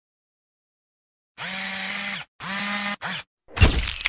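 Logo intro sound effect: three whirring buzzes, a long one, a shorter one and a brief one, each dropping in pitch as it cuts off, then a deep boom with a swish about three and a half seconds in.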